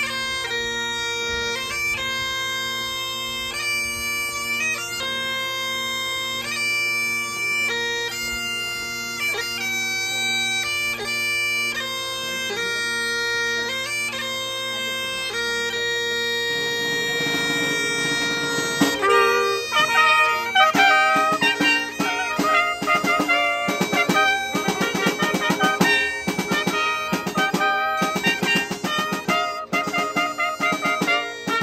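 Bagpipes playing a melody over their steady drone. About halfway through, a snare drum roll comes in and two trumpets join the tune, with the drum beating in rhythm under the brass and pipes.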